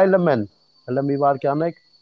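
A man's voice speaking in two short stretches, with a faint steady high-pitched tone running behind it.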